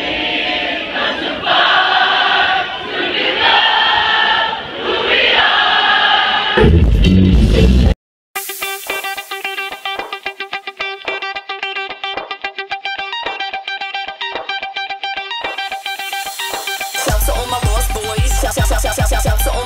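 Electronic dance music with singing for the first several seconds. About eight seconds in it cuts out briefly, then a new passage of rapid, evenly repeated plucked notes plays without bass, and a heavy bass beat comes back in near the end.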